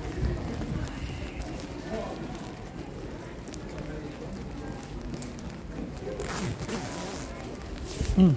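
Wind buffeting a phone microphone as a low, uneven rumble, with a brief louder rush about six seconds in, and faint footsteps on stone steps.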